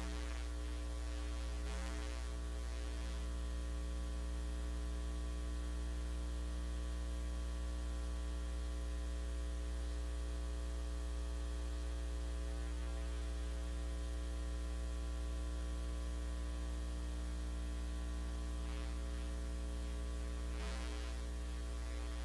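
Steady electrical mains hum: a low buzz with many steady overtones stacked above it. A few faint brief sounds come about two seconds in and near the end.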